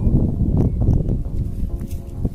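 Wind buffeting the microphone, a loud low rumble, with a few faint clicks of handling.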